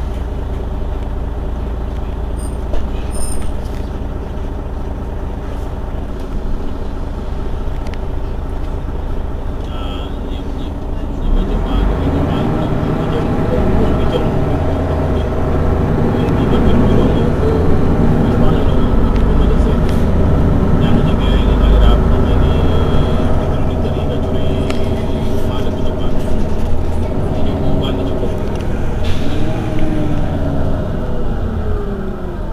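Mercedes-Benz Citaro city bus engine running steadily. About eleven seconds in it grows louder and rougher, as under load, and its pitch rises near the end.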